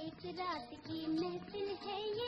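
A woman singing a Hindi film song, her line gliding and bending in pitch, over light instrumental backing. The old recording has a dull, muffled top end.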